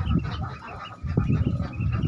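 A flock of 12-day-old Pekin ducklings peeping, many short high calls overlapping, over a low rumble that grows louder about a second in.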